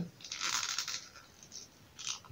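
Rubberized vest being pulled off a plastic Masters of the Universe action figure: a brief, faint scraping rustle of rubber on plastic, lasting about a second.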